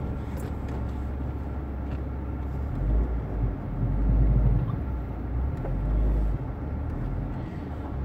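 Car cabin noise from a slowly driven car on a rough dirt road: engine and tyres running steadily, with deep low rumbles swelling up a few times near the middle.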